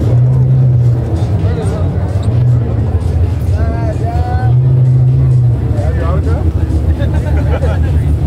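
Car meet ambience: cars' engines running with a low, steady drone that swells and drops, under crowd chatter and voices calling out.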